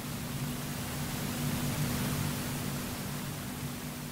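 Room tone of a lecture hall: a steady hiss with a low, even hum, from the microphone and sound system.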